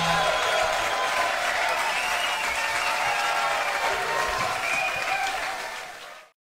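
Audience applauding and cheering in a club at the end of a rock song, the band's last held note dying away just at the start. The applause fades out near the end.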